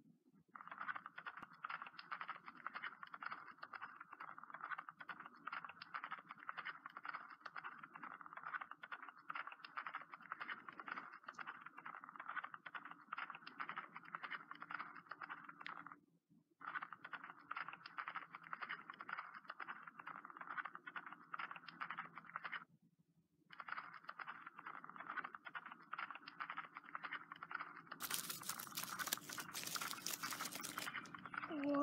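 Horse hooves galloping: a fast, continuous clatter of hoofbeats that drops out briefly twice, around the middle and about two-thirds through.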